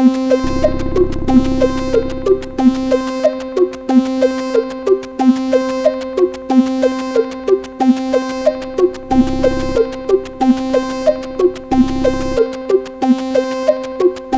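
A Eurorack modular synthesizer patch plays a fast repeating sequence of short pitched blips over a steady held drone. The rhythm is clocked by the AniModule TikTok clock divider/multiplier. Bursts of low noise come in a few times, the longest about half a second in.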